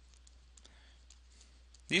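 Faint scattered clicks of a stylus writing on a drawing tablet, over near silence. A man's voice starts right at the end.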